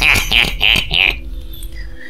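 A narrator's voice laughing 'hehehe' in about four short pulses, ending about a second in. Soft, steady background music tones carry on after it.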